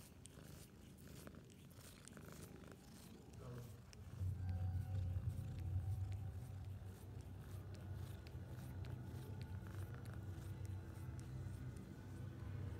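Maine Coon kitten purring right against the microphone while licking skin, with soft wet licking clicks in the first few seconds. The purr gets much louder about four seconds in and then runs steadily.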